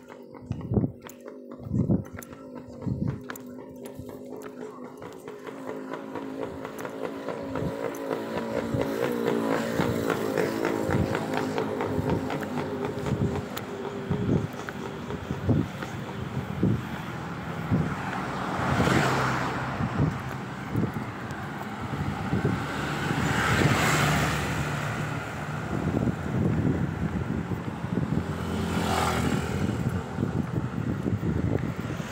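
Vehicles passing, their noise building over the first several seconds, then swelling and fading three times in the second half.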